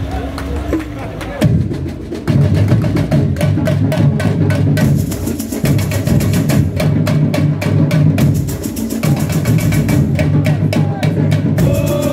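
Samba school drum section (bateria) starting up about a second and a half in and playing a steady samba rhythm: deep bass drums under rapid, sharp, regularly repeated strokes.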